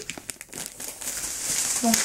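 Plastic sweet bag crinkling in the hands as it is handled: a run of small crackles that thickens in the second half.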